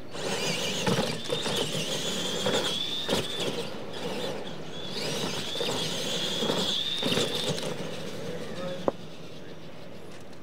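Two radio-controlled monster trucks racing over a dirt track, their electric motors and gearboxes whining at a high steady pitch in two long runs, with scattered knocks from the tyres and suspension. A sharp click comes near the end, and the whine stops.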